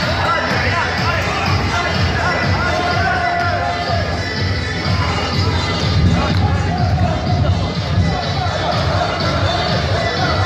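A group of men singing together over a steady beat of low thumps, with other voices in the hall around them.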